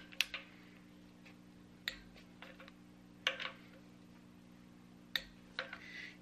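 Click-type torque wrench clicking four times, a second and a half to two seconds apart, each click marking a camshaft cap bolt reaching the set torque, with a few fainter ticks between.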